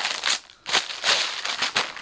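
Clear plastic packaging of a folded suit crinkling as it is handled, with a brief lull about half a second in before the crinkling picks up again.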